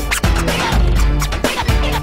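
Miami bass electro dance music with a heavy deep bass and a driving drum beat, with record scratches cut in over it.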